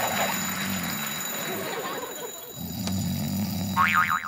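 Snoring in two long stretches, with a dip in between. Near the end comes a short burst of high, rising chirps.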